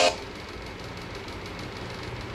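Music breaks off right at the start, leaving a steady low rumbling background noise with no clear tone.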